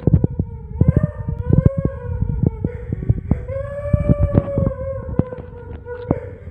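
A long, drawn-out wail held near one pitch with slight rises and falls, breaking off briefly about halfway through and starting again. Over it come loud knocks and rustles from the phone being handled and moved through foliage.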